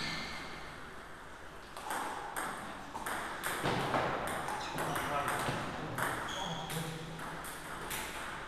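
Table tennis rally: the ball clicks off the bats and the table about twice a second, starting about two seconds in.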